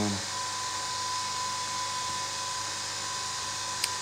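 Steady machine whir with a thin, high steady tone running under it, like a small motor or fan; a single short click near the end.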